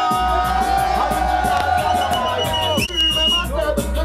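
Bass-heavy beat played loud through a sound system, with voices singing and calling over it on microphones.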